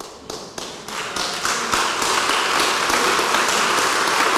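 Congregation applauding: a few scattered claps at first, filling in within about a second to steady applause.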